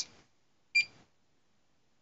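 Handheld barcode scanner beeping: one short high beep right at the start and another just under a second in, each confirming a scanned serial-number barcode.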